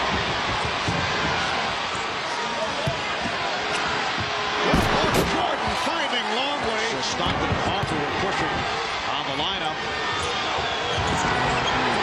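Steady arena crowd noise during live basketball play, with a basketball bouncing on the hardwood court. The crowd swells, loudest about five seconds in.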